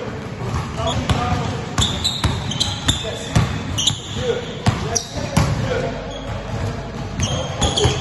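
Basketballs dribbled on a hard gym floor: a run of quick, irregular bounces from more than one ball, ringing in a large hall.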